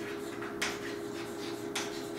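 Chalk tapping and scratching on a blackboard as a word is written, with two sharper clicks, one about half a second in and one near the end.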